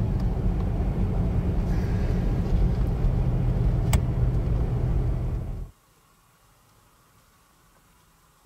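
Steady engine and tyre drone from inside the cabin of a Toyota Land Cruiser on mud-terrain Mickey Thompson Baja Claw tyres cruising on pavement, with a low hum and one sharp click about four seconds in. The sound cuts off suddenly near the end, leaving near silence.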